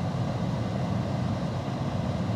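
Steady low rumble inside a Tesla Model 3's cabin as the car reverses slowly into a parking bay on its own under Autopark.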